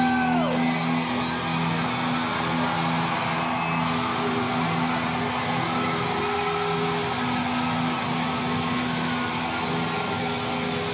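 Live rock band's electric guitar playing a song intro, holding steady ringing notes in a repeating pattern, with a crowd cheering and whooping underneath.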